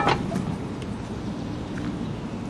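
Steady rush of water at a millrace sluice gate while its hand-cranked iron gear mechanism is turned to close the gate, with a short sharp clank from the mechanism at the very start.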